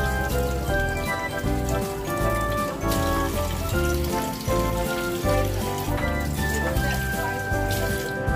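Background music with sustained, changing notes over a bass line, and water from a kitchen tap running into a steel sink faintly beneath it.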